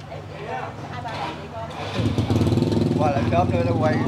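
A motorbike engine runs close by, coming in loudly about halfway through and holding steady, with voices talking over it.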